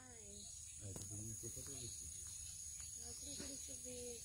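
Steady high-pitched drone of a forest insect chorus, with faint, low voices murmuring over it.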